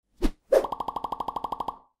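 Logo-animation sound effects: a short pop, then a second pop followed by a rapid run of about fifteen pitched ticks, some fourteen a second, that dies away near the end.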